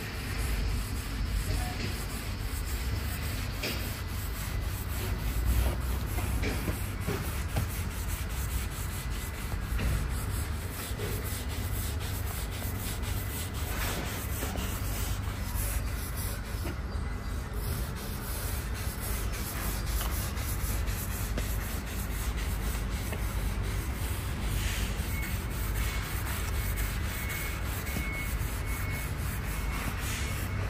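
Cloth-wrapped sponge pad rubbing oil stain into the bare face of a Japanese elm slab, a continuous scratchy wiping friction of cloth on wood.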